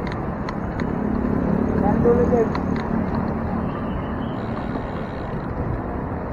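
Wind and road noise on a bicycle-mounted camera while riding, with a few sharp clicks and rattles from the bike in the first three seconds. Indistinct voices are mixed in.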